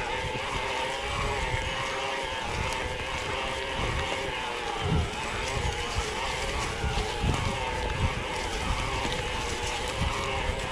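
Mountain bike climbing a dirt forest trail: a steady whine that drifts slightly up and down in pitch, over tyre rumble and wind buffeting on the microphone, with irregular knocks from bumps.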